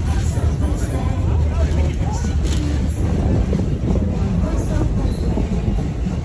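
Steady low rumble of a passenger train running along the track, heard from inside an open-sided passenger car, with passengers' voices chattering over it.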